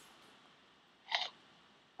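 A single short crunching chomp, a recorded bite sound effect played once through the computer's speakers, about a second in.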